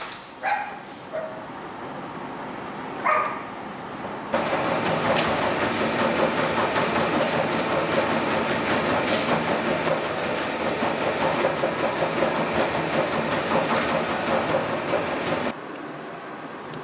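A dog barks twice in the first few seconds. From about four seconds in, a motorised treadmill runs steadily with a small dog walking on it: continuous belt and motor noise with a faint hum, which cuts off just before the end.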